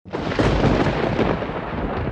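Intro sound effect: a loud, noisy rumble that starts suddenly and slowly fades away.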